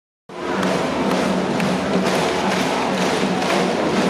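A cheering band playing music in the stands, with drum thumps over crowd noise.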